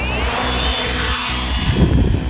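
Electric multirotor drone taking off: its motors' whine rises in pitch at the start and then holds high, with the propellers' buzzing rush growing as it lifts off. Electronic music with a steady beat plays underneath.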